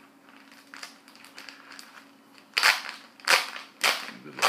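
A vinyl LP being handled in its paper sleeve and laminated album cover. Faint ticks come first, then three loud scraping rustles in the second half, over a faint steady hum.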